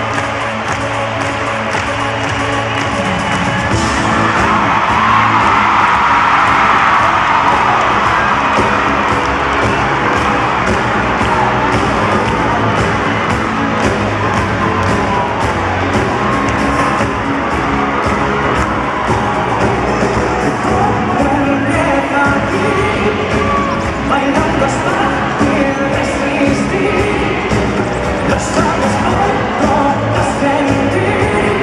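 Live pop band playing in an arena, with a steady drum beat, heard from among the audience; the crowd cheers and screams, loudest a few seconds in, and a male lead voice sings in the later part.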